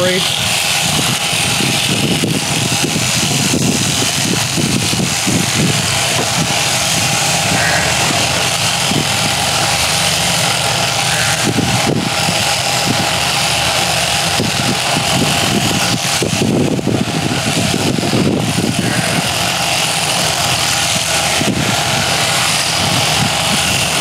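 Electric sheep-shearing machine running steadily, its handpiece comb and cutter clipping through a sheep's fleece.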